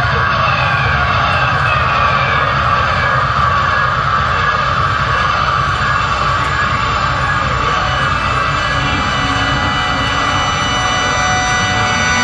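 Live band playing loud, in a dense droning jam with a busy low end. Held organ chords come in near the end.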